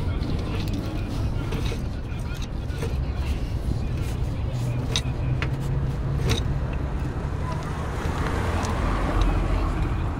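Steady low rumble of a motor vehicle engine running nearby, with scattered light metallic clicks from a screwdriver working at a brake drum's hub nut.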